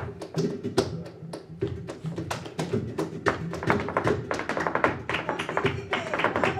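Flamenco dancer's zapateado footwork: shoe heels and toes striking the wooden stage in rapid strikes that come thicker and faster in the second half, over flamenco guitar.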